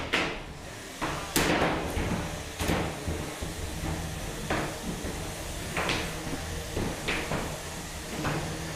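3 lb combat robots, an egg-beater drum spinner and a big-wheeled vertical spinner, knocking into each other: five sharp hits about a second and a half apart, over a steady low hum.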